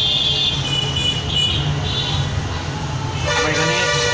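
Vehicle horns honking over a steady low traffic hum: short high-pitched toots at the start and again about a second and a half in, then a longer, fuller horn blast near the end.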